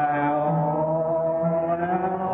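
Church congregation singing a slow hymn together, holding one long note through.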